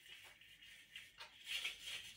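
Faint rustling of artificial pine branches, with a few light clicks about a second in, as floral wire is wrapped around a branch to fix a bauble in place. The rustle grows louder near the end.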